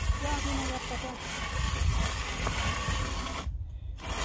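Wind buffeting the microphone, making an uneven low rumble, with a few faint spoken words in the first second. The sound cuts out briefly near the end.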